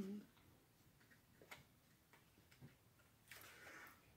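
Near silence, with a few faint, short ticks as an angel card is drawn from the deck and handled, a cluster of them near the end.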